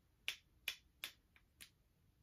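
A run of five short, sharp clicks, less than half a second apart, the first three loudest.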